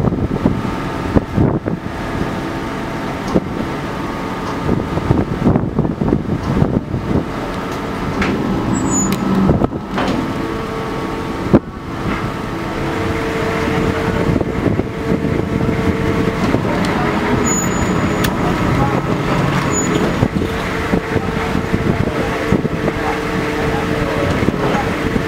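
Passenger ferry's engines and deck machinery running with a steady drone and hum while the ship comes alongside the wharf, with a few knocks; a steady mid-pitched tone joins about ten seconds in.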